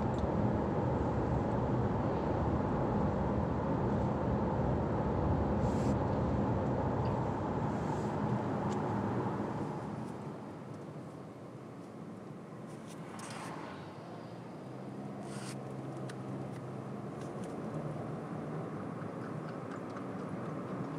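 Steady road and engine noise of a car driving, heard from inside the cabin. It drops in level about halfway through, with a few faint clicks.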